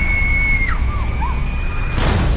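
A woman screaming: one long, high-pitched scream held steady, which drops and wavers as it breaks off less than a second in. Underneath runs a loud low rumble.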